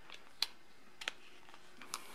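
Three light plastic clicks and taps, the first the loudest, as the fold-out stand of a multimeter is pushed back into its plastic protective covering.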